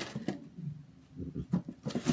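Light handling noises: a few short clicks and knocks, the sharpest right at the start and two more in the second half, with soft shuffling sounds between them.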